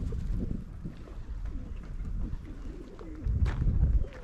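Feral pigeons cooing in short, low, repeated calls, with a low rumble that grows louder near the end.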